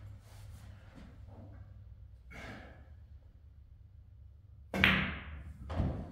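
A pool cue strikes the cue ball, a sharp crack with a short ringing tail as it meets the object ball. About a second later comes a duller thud of the object ball dropping into a pocket.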